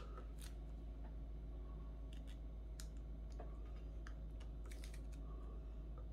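A handful of faint, scattered clicks and crackles of clear adhesive tape being pressed and smoothed across the back of a smartwatch by fingers, over a steady low hum.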